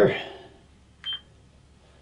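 A single short electronic beep from a Casio EX-F1 camera about a second in, the camera's confirmation that the manual white balance setting is complete.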